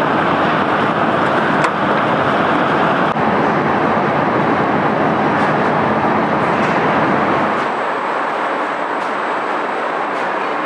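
Conveyor belts and sorting machinery of an optical waste-sorting plant running: a steady mechanical rumble and hiss with a few faint clicks. About eight seconds in, the deepest part of the rumble drops away and it gets a little quieter.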